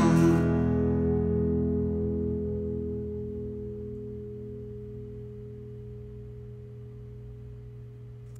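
The song's final guitar chord ringing out after the singing stops, its held notes slowly dying away.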